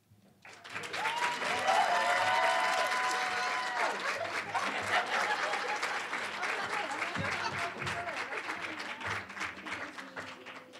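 Audience applauding after an acceptance speech. The clapping starts about half a second in, with held cheers from the crowd over it for the first few seconds. It then slowly dies down.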